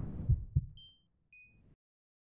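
Audio logo sting: a low swell carrying two heartbeat-like thumps a quarter second apart, followed by two short, bright chime notes about half a second apart.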